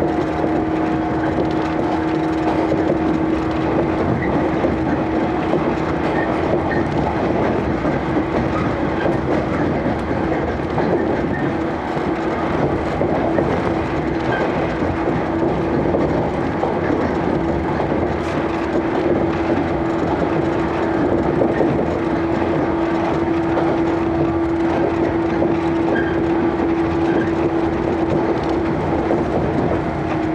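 Inside a 115 series electric train running at steady speed: a constant whine from the traction motors over the steady rumble of wheels on rail.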